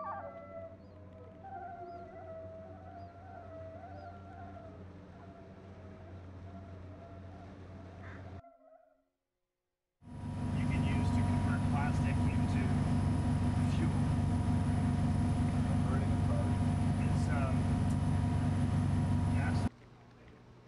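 A theremin plays a wavering, sliding melody with vibrato over a low drone, then cuts off into silence. About two seconds later a much louder, steady low rumble begins, with steady whining tones and short chirping glides over it, and it stops abruptly near the end.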